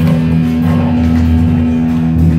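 Live rock band playing loudly without vocals: electric guitar and bass guitar hold low, sustained notes.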